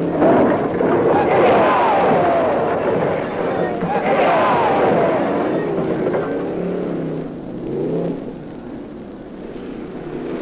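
Stock-car engines whose pitch rises and falls as they pass, mixed with the noise of a shouting crowd; the sound grows quieter near the end.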